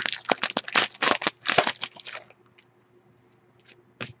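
Foil wrapper of a 2012 SPx football card pack crinkling and crackling as it is torn open, a run of sharp crackles that dies away about two seconds in.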